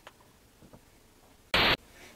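Faint room tone, then near the end a sudden, loud burst of harsh static-like noise lasting about a quarter of a second that cuts off abruptly.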